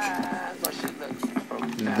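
Light clicks and taps of small jack hardware being handled: a washer going onto a jack's threaded bushing on a metal panel, and a washer and hex nut picked up off the bench.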